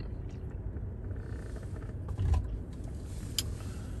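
Steady low rumble inside a car's cabin, with a few faint clicks and rustles from handling the doughnut and its paper.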